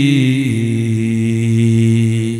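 A man's voice intoning one long, drawn-out chanted note in the sing-song style of a Bengali waz sermon. It drops a step in pitch about half a second in and is then held steady.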